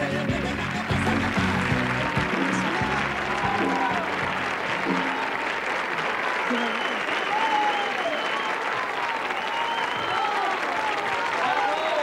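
The live band plays the song's last notes, which fade out about five seconds in, while a studio audience applauds. The applause carries on, with voices shouting from the crowd.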